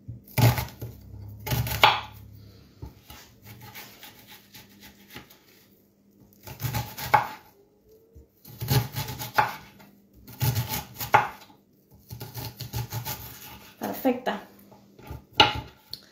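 Kitchen knife chopping an onion on a cutting board: runs of quick knocks of the blade on the board, broken by short pauses.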